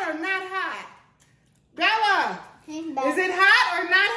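Only speech: excited, high-pitched voices of a woman and children talking, with a short silence about a second in.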